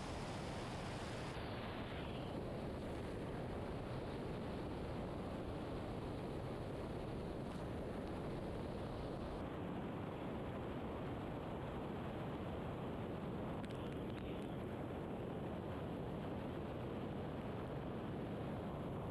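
Mori Seiki horizontal CNC machining center milling a pocket in aluminum under flood coolant: a steady, even rushing noise from the coolant spray and cutting, with no distinct tones.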